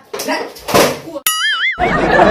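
A cartoon-style "boing" sound effect, a short tone wobbling up and down in pitch, about a second and a quarter in, after a spoken word and a brief noisy hit. A loud, rushing noise starts just before the end.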